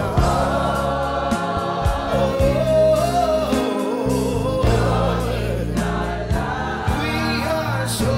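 Gospel worship music: a choir singing a song over held bass guitar notes and drums.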